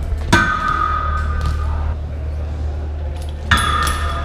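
Two metallic clangs about three seconds apart, each ringing on: a BMX bike's pegs striking a steel pole. The first rings for about a second and a half, the second more briefly.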